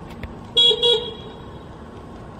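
Two short horn toots back to back, about half a second in, from the Simai TE70 electric tow tractor's horn.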